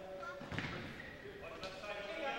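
Futsal match in a gym hall: a ball struck and bouncing on the wooden floor, with sharp knocks about half a second in and again near the end, under players' echoing shouts.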